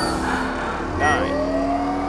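Film sound effects for a giant robot's systems coming online. A rising whine starts about a second in, over a steady hum and low rumble, with a short electronic chirp.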